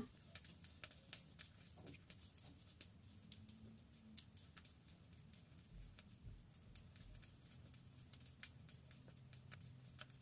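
Faint, irregular light clicks of metal circular knitting needle tips as knit stitches are worked, over near silence.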